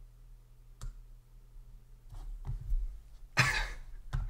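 A single sharp click about a second in, then near the end a short, breathy burst of a man's laughter.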